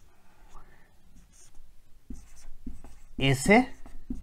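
Marker pen writing on a whiteboard in short, faint strokes.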